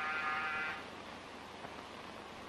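Electric door buzzer sounding once, a steady buzz for about a second that cuts off sharply, over the constant hiss of an old film soundtrack.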